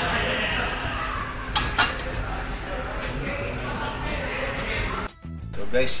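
Background voices and music over a ladle working a large aluminium pot of simmering spaghetti sauce, with two sharp metal knocks about a second and a half in. The sound drops out briefly near the end.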